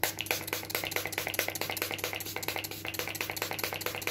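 Makeup fixing spray (Revolution Strawberries and Cream) being misted onto the face in a long run of quick, repeated spray bursts.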